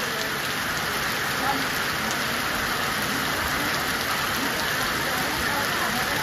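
Heavy monsoon rain falling steadily on muddy ground and puddles: a dense, even hiss with no break or change.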